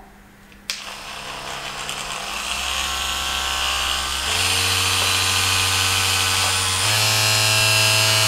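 Lovense Domi wand vibrator switched on and buzzing, stepping up to a higher-pitched, louder hum three times as it goes up through its power levels.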